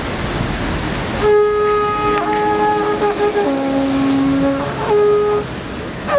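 Street traffic noise, then from about a second in wind instruments playing a slow line of long held notes that step from pitch to pitch, at times two notes sounding together.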